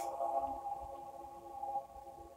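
Quiet background music: a soft, sustained chord of several steady held tones, with no beat.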